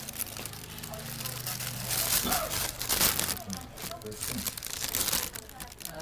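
Thin plastic bag crinkling and rustling as a hand moves around among the cookies inside it, in bursts that are loudest about two to three seconds in and again near five seconds.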